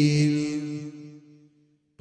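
A man's voice holding one long chanted note that fades away over about a second and a half, then a brief silence.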